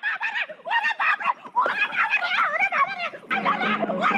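High-pitched voices laughing and squealing in quick, wavering bursts.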